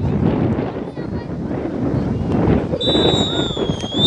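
A referee's whistle blowing one long, steady blast starting near three seconds in, over wind on the microphone and the shouts of young players on the pitch.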